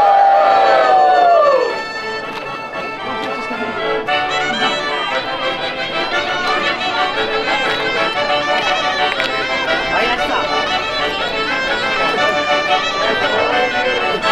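Accordion playing a traditional Quattro Province dance tune at a steady lilt. In the first two seconds a loud drawn-out voice call rises, holds and falls away over the music.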